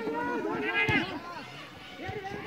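Several people's voices overlapping in shouts and chatter around a football pitch, with one louder call just before the one-second mark, then quieter toward the end.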